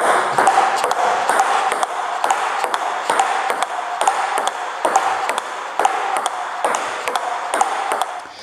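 Table tennis forehand counterhit rally: the ball clicking off the bats and bouncing on the table in a steady rhythm, about two to three hits a second.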